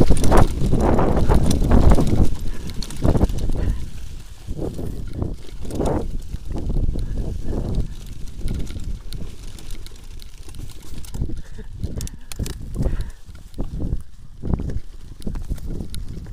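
Mountain bike rolling downhill over a rough forest trail: wind rumble on the camera microphone with irregular rattles and knocks of the bike over bumps, loudest in the first two seconds, then quieter and uneven.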